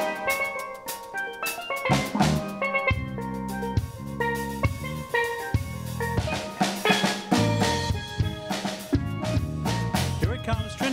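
Steel pan band playing an instrumental passage: struck steel pan notes carry the melody over an electric bass line and a drum kit keeping an upbeat rhythm.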